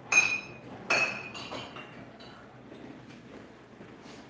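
Glass bottles in a liquor cabinet clinking together: two sharp, ringing clinks about a second apart, then a few lighter ones.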